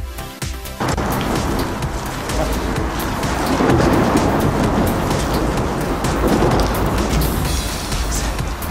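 Music stops abruptly under a second in, giving way to a loud, steady rushing noise with a deep rumble: wind buffeting the camera's microphone outdoors.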